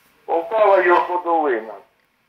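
A telephone caller speaking, the voice carried over the phone line with its narrow, thin sound.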